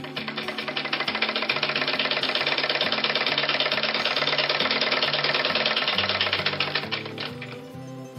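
Domestic straight-stitch sewing machine running a seam at a fast, even clatter, picking up speed at the start and slowing to a stop near the end, over background music.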